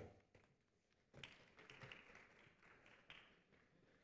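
Near silence, with faint light taps and a low hiss for about two seconds in the middle.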